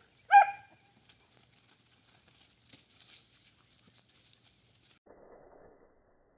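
A single loud, short dog bark about half a second in, followed by faint scattered rustling as the dogs run through dry leaves.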